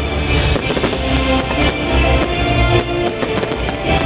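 Fireworks going off in rapid, overlapping bangs and crackles with a deep rumble, over loud show music.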